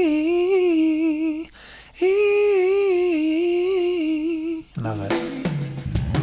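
A male voice sings long held notes with a wavering pitch, breaking off briefly about a second and a half in before holding another. Near the end a band with drums and more voices comes in.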